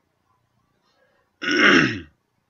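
A man clears his throat once, about a second and a half in: a short, loud, rasping sound whose pitch falls.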